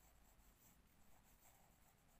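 Faint sound of a pen writing a word on paper, in small uneven strokes, close to near silence.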